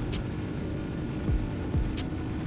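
Motorcycle engine running at a steady pitch while cruising in fifth gear, under an even rush of wind and road noise.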